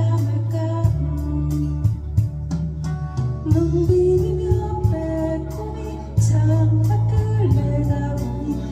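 A woman singing a slow, gentle folk ballad, holding long notes, over her own acoustic guitar strummed in a steady rhythm with sustained bass notes.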